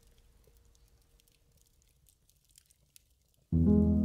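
Faint, sparse crackles of a log fire, then calm music starts abruptly about three and a half seconds in, with held chords.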